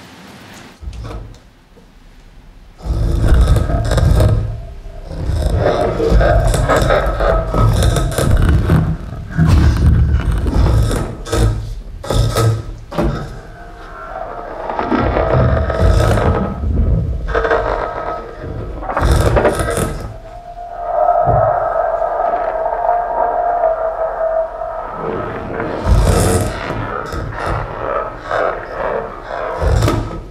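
A live electronic piece played on a cardboard box: the box's flaps are scraped, knocked and bent, and the computer processes these sounds into dense, booming textures with sustained ringing tones. The knocks and scrapes start loudly about three seconds in, and the ringing tones grow stronger in the second half.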